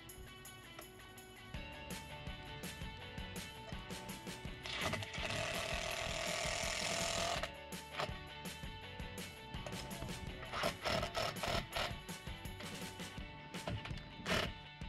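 Cordless drill running for about three seconds as it fastens the bimini support pole's swivel mount to an aluminium tower leg, then a few short sharp mechanical sounds near the end. Background music plays throughout.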